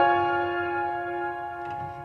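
Slow, soft solo piano music: a chord struck at the start rings on and slowly fades.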